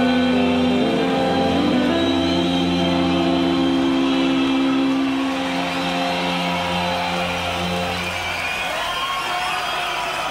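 Live rock band's electric guitars holding sustained chords that ring out and fade about eight seconds in, at the close of a song. A large crowd starts cheering and whooping near the end.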